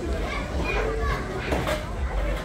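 Children playing: high-pitched children's calls and chatter mixed with other voices around them.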